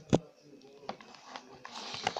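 Handling noise from a phone or camera as fingers touch it close to the microphone: a sharp tap just after the start, then a few faint ticks.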